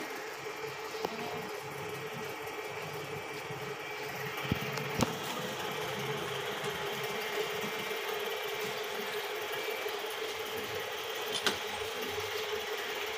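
A steady mechanical hum, like a small electric motor, holding one constant mid-pitched tone throughout, with a couple of faint knocks about five seconds in.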